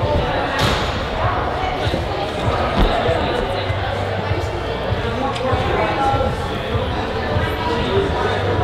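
Climbing-gym hall ambience with indistinct echoing voices, and a dull thud about three seconds in as a climber drops off the bouldering wall onto the padded floor mat.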